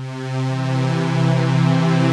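Roland Juno-Gi synthesizer holding a sustained chord, played through a budget tube preamp with its gain at maximum, pushing it into overdrive. The sound swells in over about the first second and then holds steady.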